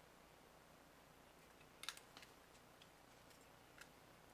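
Near silence with a few faint, sharp clicks from the AR-15 upper and its bore snake being handled: a small cluster just under two seconds in and a single tick near the end.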